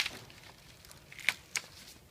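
A paper drawing sheet being handled and slid across a drafting table: faint rustling, with a sharp tap at the start and two more light taps about a second and a half in.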